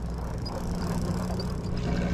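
Steady low drone of a sportfishing boat's engine running at idle while the boat sits on the fishing spot, under an even hiss of wind and sea.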